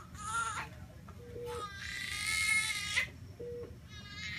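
Newborn baby girl with a cleft palate crying: a short cry near the start, then a longer, louder cry from about a second and a half in to three seconds in.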